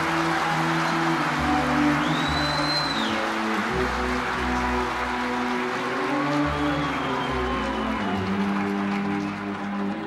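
Orchestra with strings holding long sustained low notes under steady audience applause. A brief high glide rises and falls about two seconds in.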